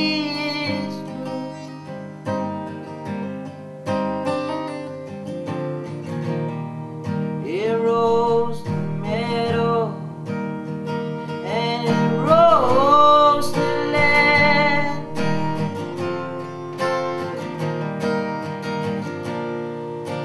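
Gibson dreadnought acoustic guitar played with a pick, a steady picked and strummed accompaniment. A singing voice comes in twice in the middle, with sliding notes.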